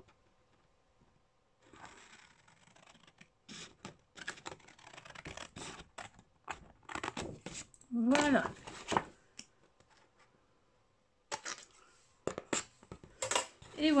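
Scissors snipping through scrapbooking paper in dense runs of short cuts with paper rustling, starting about two seconds in and stopping around nine seconds. A brief hum of voice comes about eight seconds in, and a few more paper-handling clicks come near the end.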